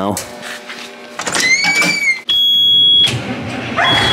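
Truck cab warning buzzer sounding a steady high beep for most of a second past the middle, cutting off suddenly, then starting again near the end as the truck is readied to start in deep cold. Before it, a faint steady hum and a short rising-and-falling whistle.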